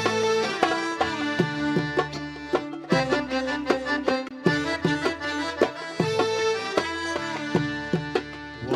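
Sudanese band playing an instrumental passage: violins and accordion holding melodic lines over a steady hand-drum rhythm on bongos, with electric guitar.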